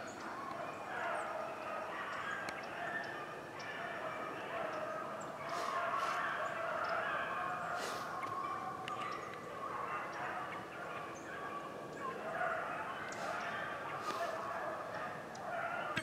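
A pack of rabbit dogs baying in many overlapping voices, almost without a break, while running a rabbit in the woods.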